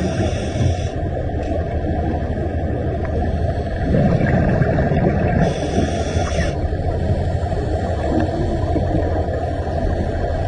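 Muffled underwater noise picked up by a camera in its housing: a steady low rumble, with two short bursts of higher hiss, one at the very start and one about six seconds in.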